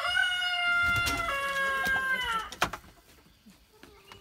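Rooster crowing once, a long crow of about two and a half seconds that steps down in pitch partway through and falls away at the end, followed by a single sharp knock.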